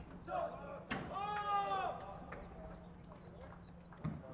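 A young male player's drawn-out shout, about a second long and rising then falling, with other voices around it: a team-huddle rallying call. A sharp knock comes just before it.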